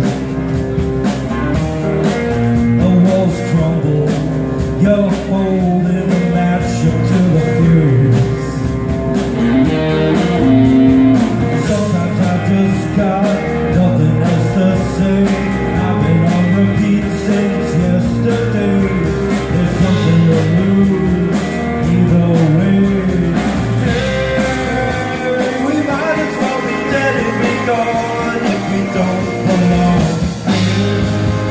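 Live rock band playing: electric guitars over a drum kit, with singing.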